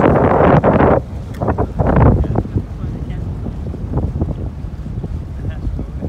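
Wind buffeting the microphone on a moving pontoon boat, heaviest in the first second and then easing off sharply, over a low steady rumble of the boat underway.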